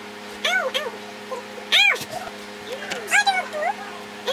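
A woman's high-pitched pained whimpers and yelps, about five short cries that rise and fall in pitch, the loudest about two seconds in, as cold wax is pulled from her underarm.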